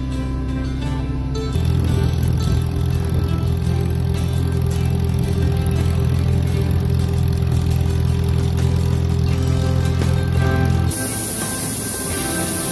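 Background music over an old tractor engine that starts about a second and a half in and runs steadily as a loud low rumble. Near the end the engine cuts out and a steady hiss of shelled corn pouring into an auger hopper takes its place.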